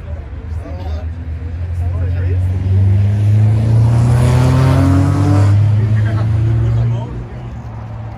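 A car engine close by, rising in pitch as it accelerates, loudest in the middle and then falling away about seven seconds in as the car drives past.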